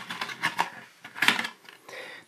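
Handling noise as a black plastic sight cover cap is pulled out of its cardboard packaging insert: a few short clicks and scrapes, the loudest a little past halfway.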